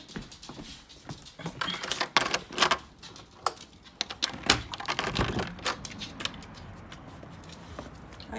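A door being unlocked and opened: a run of clicks, rattles and knocks, the loudest about four and a half seconds in, then only a faint steady background.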